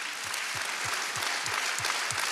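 Large indoor audience applauding steadily, with a soft low pulse about three times a second underneath.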